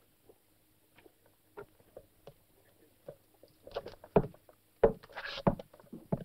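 Scattered footsteps and light knocks, faint at first, with a run of louder, sharper steps and scuffs from about three and a half to five and a half seconds in, over a faint steady low hum.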